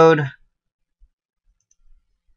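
A man's voice finishing a word, then near silence: room tone with a couple of faint low bumps.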